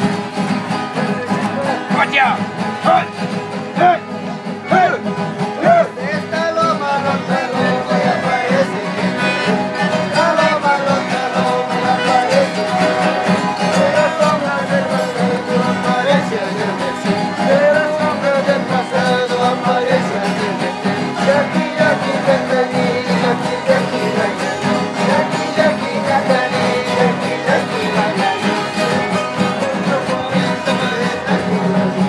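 Andean string band playing festival dance music: strummed guitars with a violin carrying a wavering melody, continuous throughout.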